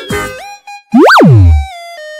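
Cartoon sound effect: a single loud swoop about a second in that rises quickly and falls away low, set among bright children's music.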